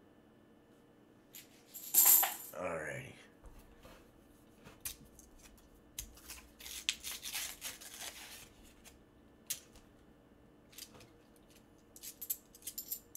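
Half-dollar coins and a coin roll being handled on a table. There is a sharp crackle about two seconds in, followed by a short tone falling steeply in pitch. Scattered clicks follow, then a run of coins clinking against each other through the middle, and a few more clicks near the end.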